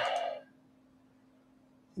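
The tail of a man's word over a video call, then near silence: room tone with a faint steady hum.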